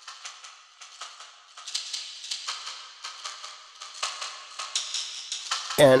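The song's original demo percussion loop, a stock loop from a sample pack, playing back: a thin, even rhythm of sharp clicks and shaker-like hiss, with no bass. A voice comes in at the very end.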